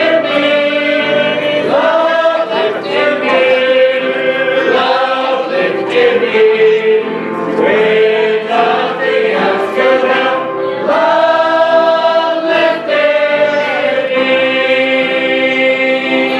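A church congregation singing a gospel hymn together in long held notes, led by a man singing into a microphone.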